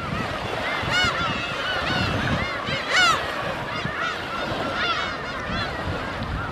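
A flock of gulls calling, many short arched cries overlapping one another, with one louder cry about three seconds in.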